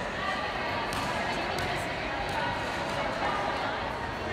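Background chatter of children and adults in a gymnasium, with a few sharp bounces of balls on the wooden floor about a second in and again near the middle.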